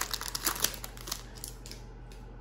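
Foil trading-card pack wrapper crinkling and crackling as it is torn open and the cards are pulled out. The crackles come thick at first, then die away in the last half second.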